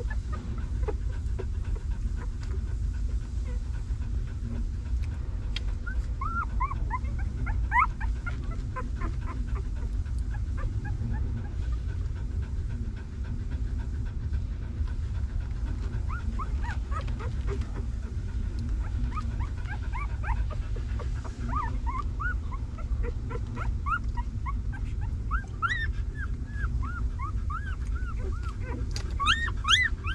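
Newborn puppies squeaking and whimpering in short high cries that come in clusters, thickest in the last third, over a steady low rumble.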